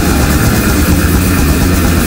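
Live recording of brutal death metal: downtuned distorted guitars, bass and drums making a dense, loud wall of sound with a heavy low end.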